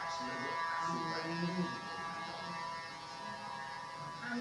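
A ship's horn sounding one long, steady, buzzing blast as the ferry is run ashore for scrapping.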